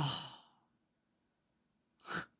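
A man's breathy sigh trailing off from the end of his words as he thinks over a question, fading out within about half a second.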